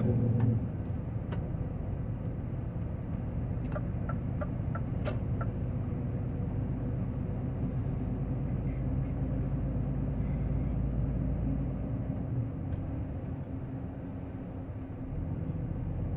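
Steady engine drone and road rumble of a tractor-trailer truck, heard from inside its cab while cruising along a highway.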